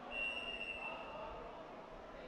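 A single high, steady whistle blast lasting about a second, from a referee's whistle, over a background murmur of crowd noise in the hall.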